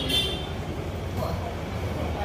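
Steady low background rumble with faint voices. A brief high-pitched ringing sound comes at the very start.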